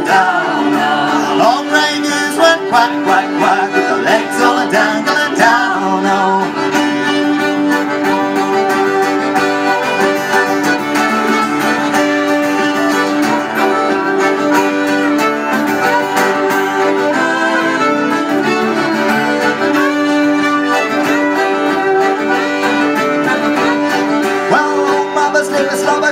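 Instrumental break of an English folk song: two fiddles, an acoustic guitar and a concertina playing the tune together, with no voice.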